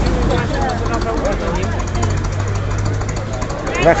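Vintage lorry engine idling with a steady low hum, under the chatter of nearby voices.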